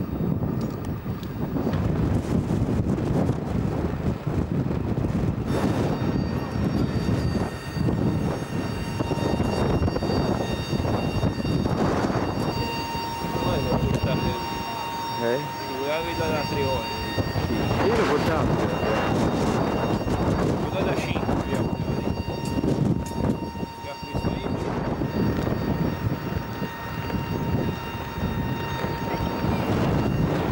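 Wind buffeting the camcorder microphone on an open carrier flight deck, a continuous low rumble, with people talking in the background. A steady high whine comes in about five seconds in and holds on.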